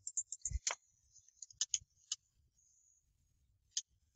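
Computer mouse clicking quietly while menu items are chosen. There is a quick cluster of clicks with a soft thump in the first second, a few more around one and a half to two seconds in, and one single click near the end.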